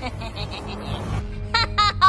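Background music, then a cartoon villain's gleeful laugh, 'ha ha ha', starting about one and a half seconds in.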